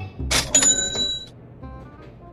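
Cash-register "ka-ching" sound effect: a short clatter followed by a bright bell ring lasting under a second, marking another $100 owed for being called "baby". Background music plays underneath.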